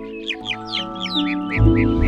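Gentle music of held notes with a quick run of short, falling chirps of baby birds cheeping over it, about four a second. A deep bass note comes in near the end.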